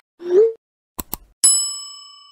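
End-card sound effects: a short rising swoosh, then two quick clicks, then a bell ding that rings and slowly fades.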